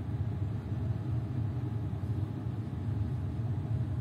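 Steady low hum of a passenger train carriage's interior while the train stands at a station platform.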